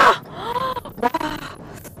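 A woman's drawn-out exclamations of surprise, a long "wow" followed by two more gasping cries, as the car sways during a sudden high-speed lane change, over faint cabin road noise.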